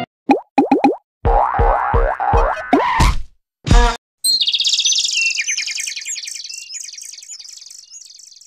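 Edited title-card sound effects. A few quick rising cartoon boing swoops come first, then a short run of thumping beats and one loud hit, then a high, rapid chirping trill that fades out over the last few seconds.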